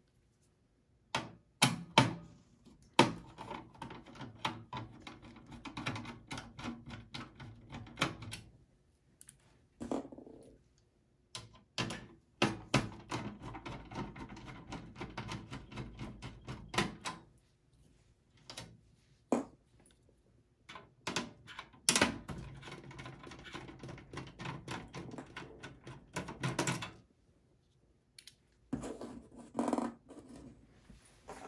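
Phillips screwdriver backing out motherboard screws in a desktop PC's metal chassis: three stretches of rapid clicking and rattling as the screws turn, with separate sharp clicks and knocks between them.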